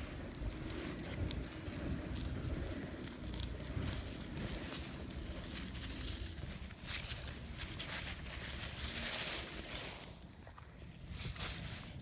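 Scuffing and rustling in sand and dry fallen leaves, from footsteps and a magnet dragged along the ground, with scattered light clicks; it drops quieter about ten seconds in.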